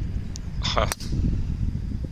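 Driver striking a golf ball off the tee: a single sharp crack about a second in.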